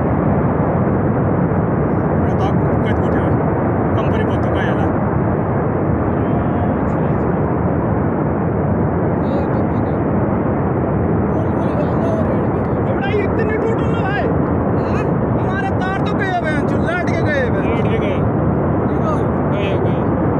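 Steady, heavy rushing noise of a glacier-burst flood of water, rock and debris surging down a mountain gorge.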